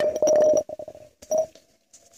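Rubbing and knocking on a phone's microphone as the phone is handled: a loud crackling burst for about half a second, then a shorter bump over a second later.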